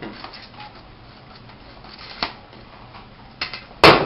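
Quiet room sound with a small click about two seconds in, then a loud sharp clunk near the end as a bowl is set down on the counter.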